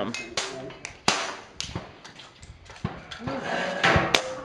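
Air rifle shot about a second in: a sharp crack with a short ringing tail. Softer knocks follow, and another sharp crack comes near the end.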